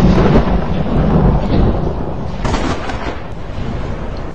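A thunder-like rumble with a rushing noise, loud at first and slowly fading.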